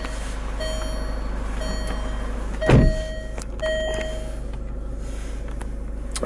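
A Land Rover Freelander's in-car warning chime beeping, four short beeps about a second apart, then it stops. A single heavy thump comes just under three seconds in.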